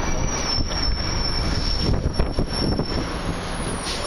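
A steady high-pitched squeal that starts just after the beginning and holds almost to the end, over a constant low rumble of outdoor noise.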